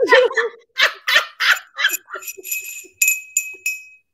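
A clear glass hand bell rung over and over, about three strikes a second, each strike leaving a bright, high ringing tone. A woman laughs over the first half second.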